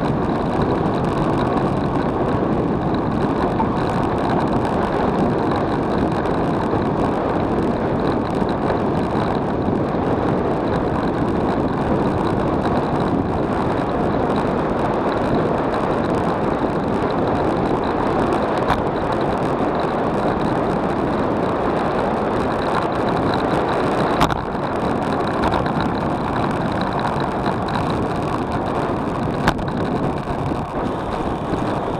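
Steady, loud rush of wind over a bike-mounted action camera's microphone, with road noise, on a fast road-bike descent. Two sharp knocks come late on, a few seconds apart.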